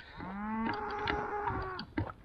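A cow mooing: one long, steady call lasting about a second and a half.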